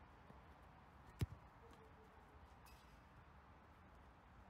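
A football struck once: a single sharp thud, with a smaller knock just after it, about a second in.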